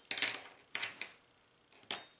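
Light metallic clinks from small metal objects being handled, about four short ringing taps spread over two seconds.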